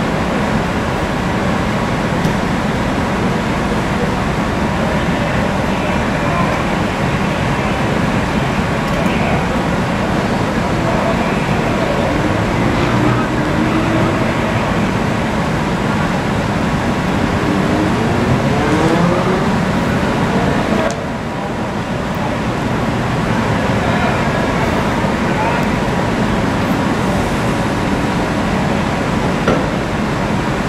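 Steady street noise of traffic and running vehicle engines, with people's voices faintly in the background; the noise briefly dips about two-thirds of the way through.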